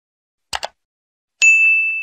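A quick double mouse click, then about a second later a single bright notification-bell ding that rings on and fades. These are the sound effects of a subscribe-button animation.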